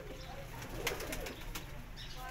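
Domestic pigeons cooing softly, low and faint, with a couple of light clicks.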